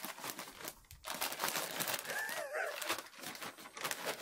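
Plastic compost bag crinkling and rustling as hands dig into it and scoop out damp, clumpy compost. A brief faint wavering call sounds about halfway through.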